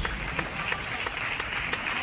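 Light applause from a sparse audience clapping at the end of a table tennis match: a steady patter of many separate hand claps.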